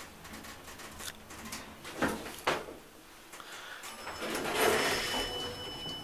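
Elevator car arriving: two sharp knocks about two seconds in, then the elevator doors sliding open near the end, a rising hiss with a faint steady high tone.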